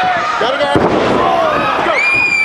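Live crowd of spectators shouting and yelling, with a heavy thud about three-quarters of a second in as a wrestler coming off the top rope lands on the ring mat.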